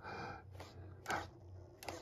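Quiet workshop room tone with a steady low hum, a brief soft sound about a second in and a small click near the end.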